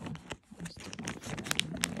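Plastic poly mailer bag crinkling and rustling as it is handled, a run of quick sharp crackles with a brief lull about half a second in.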